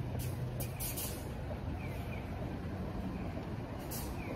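Steady low rumble of street traffic, with brief rustles of a down coat and fur hood brushing the phone's microphone about a quarter second in, around a second in and near the end.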